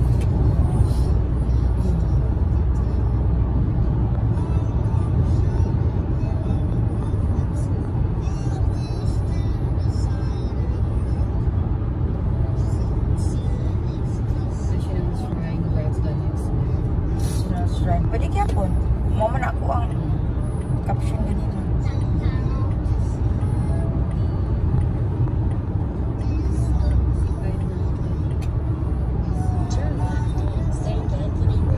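Steady road and engine noise of a car cruising at highway speed, heard inside the cabin as a continuous low rumble.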